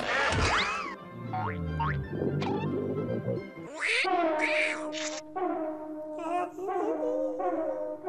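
Cartoon score and sound effects: quick rising pitch glides and a stepped falling run of low notes in the first two seconds, then held, wavering musical notes from about four seconds in.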